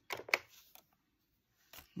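A few quick clicks of keys being pressed on a Texas Instruments TI-5045SV printing desk calculator, with one more faint click near the end.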